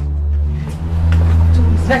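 Film-score background music: a low, sustained drone of held notes that shifts to a deeper, stronger note about half a second in. A woman's voice breaks in right at the end.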